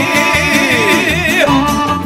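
Balkan izvorna folk music: a long high note with wide vibrato held over a steady plucked-string rhythm, sliding down and ending about one and a half seconds in.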